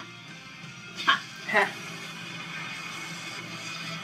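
Anime episode soundtrack playing: steady background score with two short, sharp yelps about a second in, half a second apart, the second falling in pitch.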